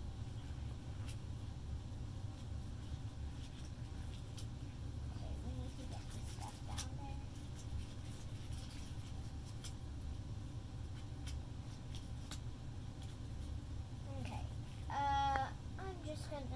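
Faint rustling and clicks from hands working the rubber neck of a slime-filled balloon as it is tied, over a steady low hum. There is a short, high squeak near the end.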